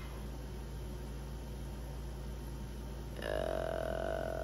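Quiet room with a steady low background hum; about three seconds in, a woman starts a held, steady-pitched vocal hum or drawn-out 'ooh' that runs on past the end.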